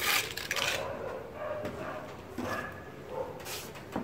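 A hand float scraping fine cement mortar across a concrete ceiling, spreading the thin first coat of a fine plaster finish. The scrape is loudest in the first second, followed by softer, irregular scrapes and taps.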